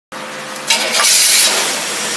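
Engine on a test stand running with a Rochester single-barrel carburetor under test, a steady mechanical hum with a loud hiss that swells up under a second in and eases off by about a second and a half.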